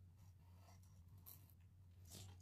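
Near silence: the faint scratch of a pen drawing on paper, over a low steady hum.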